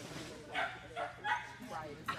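Small dog barking: three short, sharp barks within about a second, starting about half a second in.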